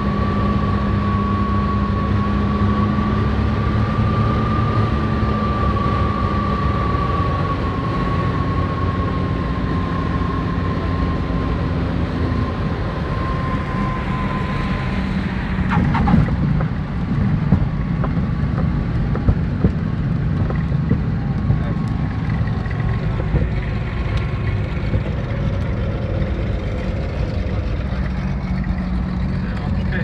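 Inside the cabin of a Piper Seneca twin-engine plane: the engines drone steadily on final approach, with a high whine that dies away. About halfway through the wheels touch down with a rough rush of noise, then the landing roll follows with scattered knocks and bumps under the engine drone.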